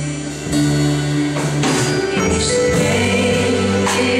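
A man singing a gospel worship song into a handheld microphone, holding long notes over instrumental backing. A lower bass part comes in about two seconds in.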